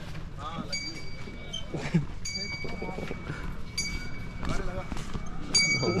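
A small metal bell struck about every second and a half in a steady rhythm, each clear ring carrying on until the next strike, with brief laughter in between.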